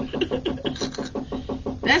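Washing machine rattling, a fast run of short knocks about ten a second, which she puts down to a small part in the drain tub.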